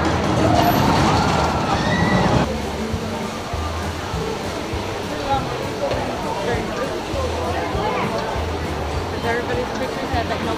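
A spinning roller coaster running along its track, with riders' voices rising and falling over it; it stops abruptly about two and a half seconds in. After that, a crowd talking.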